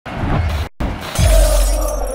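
Intro sting sound effect: a glass-shatter crash with a deep boom about a second in, dying away slowly. Just before it, a short noisy burst cuts off abruptly.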